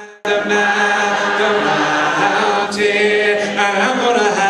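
Voices singing a cappella, with long held notes; the singing cuts in abruptly a quarter second in, after a brief break.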